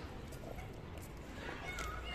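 Child's push tricycle rolling over paving stones, its wheels giving a steady rumble with small clatters at the joints.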